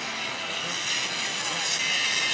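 Jet ski engines running with a high whine, growing louder about a second in.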